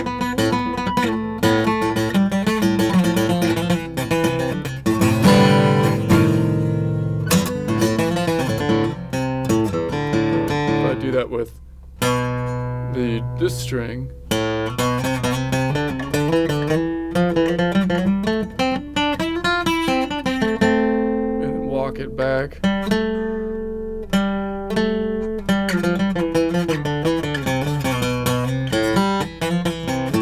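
Steel-string acoustic guitar played note by note, walking an A minor scale two notes per string with open strings ringing in. About halfway through, a run climbs steadily in pitch and then comes back down.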